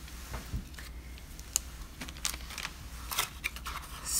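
A few faint, scattered light taps and clicks of hands handling small craft items on a work mat.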